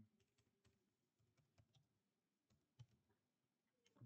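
A scattering of faint, irregular computer keyboard keystrokes in near silence, one slightly louder about three seconds in.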